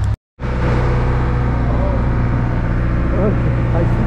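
Passenger ferry's engine running at a steady idle, a loud low drone. The sound drops out for a split second near the start.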